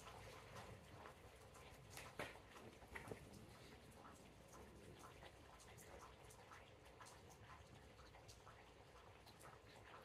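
Near silence: faint outdoor room tone with scattered faint clicks, the loudest about two and three seconds in.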